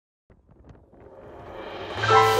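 Wind rushing over the microphone, swelling steadily, with a few faint clicks near the start.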